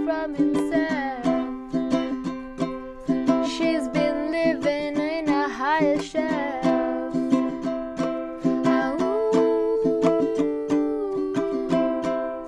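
Ukulele strummed in a steady rhythm, with a girl's voice singing along at times.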